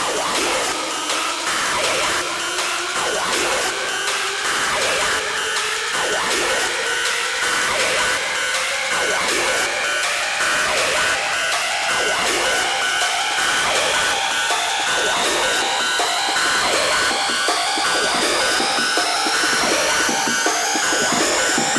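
Hard techno DJ mix at a build-up: a synth sweep rises slowly in pitch over a dense wash of noise, with little bass underneath.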